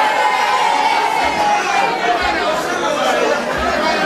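A crowd of many voices speaking and calling out at once, with one voice drawn out on a long, slightly falling note over the first two seconds.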